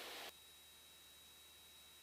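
Near silence: a faint hiss for a moment at the start, then a steady, very quiet background.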